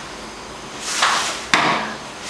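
Two grapplers in cotton gis rolling on a foam mat during a mount escape: fabric swishing and the mat taking their weight, with a sudden thump about a second and a half in as their bodies land.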